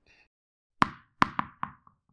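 Four short, sharp pop sound effects in quick succession, starting just under a second in, each with a brief ringing tail. They accompany four cartoon tennis balls appearing in an animated logo intro.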